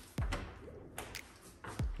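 Coat-closet door being opened: several sharp clicks from the doorknob and latch, with a few soft thumps.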